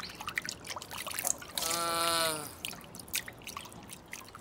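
Water from a kitchen tap trickling and splashing over a ceramic bowl as it is rinsed by hand, with many small drips and clicks. About halfway through, a short pitched tone sounds for just under a second, sagging slightly as it ends.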